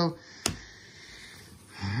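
A single sharp tap about half a second in, a stack of baseball cards set down on a wooden tabletop, followed by faint rustling of the cards being handled; a man's voice comes in near the end.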